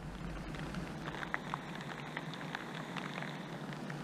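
Water drops falling into a garden pond, scattered brief plinks over a steady hiss, with a steady low hum underneath.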